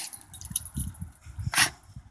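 Beagles playing, with one short, sharp dog vocalisation about one and a half seconds in, among soft low thuds.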